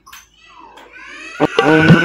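Door hinges creaking as a door swings open: a drawn-out, wavering squeal that grows steadily louder and ends in a stronger, lower creak near the end.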